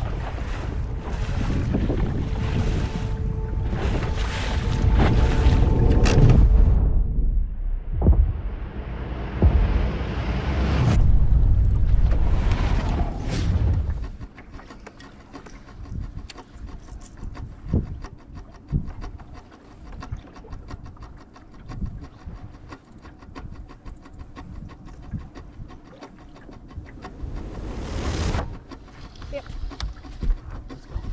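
Strong wind buffeting the microphone with choppy lake water for about the first half. It then gives way to quieter open-water ambience on the boat deck, with scattered light clicks of fishing tackle and a brief rush of wind noise near the end.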